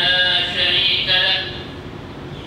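A man's voice chanting the Arabic opening of a Friday sermon in a drawn-out, melodic style, trailing off about a second and a half in.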